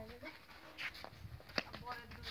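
Faint sounds of young children at play: a high voice trails off falling in pitch at the start, then scattered small sounds and one sharp click about one and a half seconds in.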